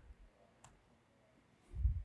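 A single laptop key click, the keystroke that runs the typed terminal command, about two-thirds of a second in, followed near the end by a low bump.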